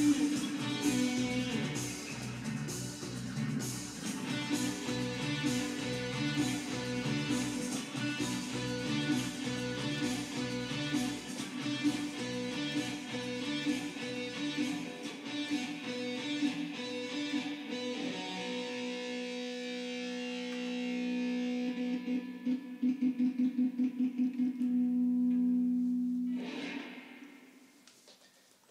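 Solid-body electric guitar playing a lead line over a steady drum-and-percussion beat and bass. About eighteen seconds in the beat stops and the guitar holds long sustained notes, then plays a fast pulsing repeated note before the sound fades out near the end.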